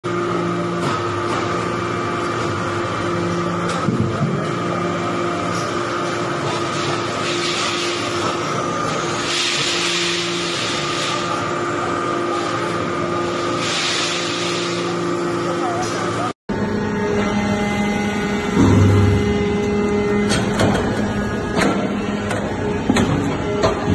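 Hydraulic briquette press running with a steady machine hum, with stretches of hissing about nine and fourteen seconds in. After a sudden break about sixteen seconds in, a different steady machine sound with a few sharp knocks.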